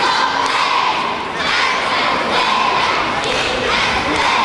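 Cheerleading squad shouting a cheer in unison, with the crowd yelling along.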